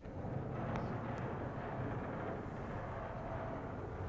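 Large sliding blackboard panels being pushed up and down past each other, a steady rumble that starts abruptly.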